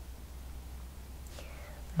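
Quiet pause of room tone with a steady low hum, and a faint whisper about one and a half seconds in.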